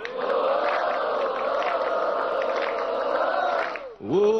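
A studio audience of many voices singing together in unison, one long held note that dies away just before the end.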